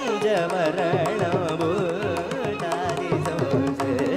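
Carnatic classical music: a male voice singing heavily ornamented, gliding phrases, closely shadowed by a violin, over a steady sruti drone. Mridangam and thavil strokes pick up about a second in.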